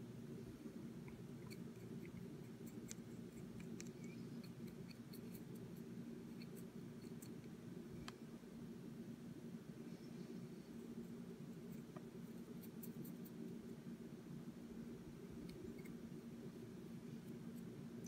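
Quiet steady low hum of room tone with scattered faint small clicks and ticks from a brush and fingers handling a miniature on a plastic painting handle.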